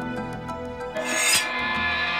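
A katana sliding along its scabbard: one short, rising metallic rasp about a second in, over background music.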